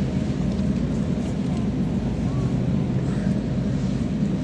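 Steady low hum and rumble of supermarket background noise.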